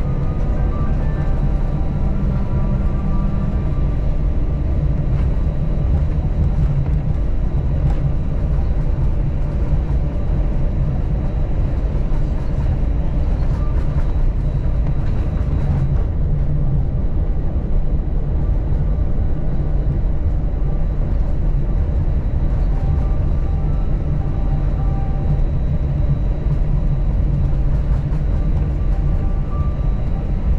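Airbus A321 cabin noise while taxiing after landing: a steady low rumble from the idling engines and the rolling airframe, heard from inside the cabin.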